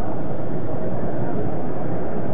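Steady, loud background noise with a low rumble and a hiss above it, even throughout, in a pause between a lecturer's sentences.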